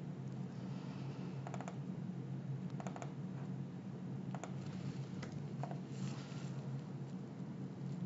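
A few scattered clicks from a computer mouse and keyboard, spaced irregularly, over a faint steady low hum.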